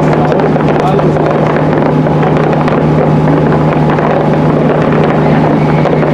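Fireworks crackling densely and continuously, many small pops close together, over a constant low hum, with voices mixed in.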